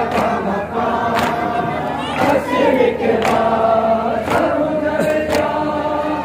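Men's voices chanting a noha in unison, with sharp claps of hands striking chests together about once a second (matam) keeping the beat.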